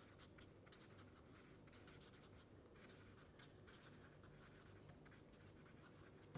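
Faint scratchy strokes of a felt-tip marker writing on paper, in a quick irregular run of short strokes.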